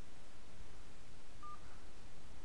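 A single short telephone beep about a second and a half in, over a steady low hiss on the phone line: the key press that stops the voice-message recording.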